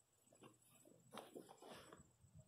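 Near silence, with a few faint scuffs and clicks in the second half.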